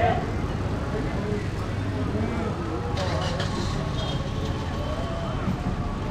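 Busy market-street ambience: motor scooters and cars running close by over a steady low traffic rumble, with passers-by talking in the background and brief high-pitched sounds about three seconds in.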